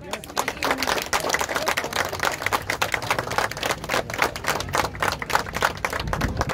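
Small crowd applauding: many quick, irregular hand claps that break out all at once.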